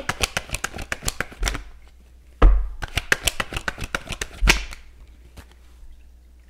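A tarot deck being shuffled by hand: quick runs of sharp card snaps and clicks, broken by a few dull thumps, dying away about five seconds in.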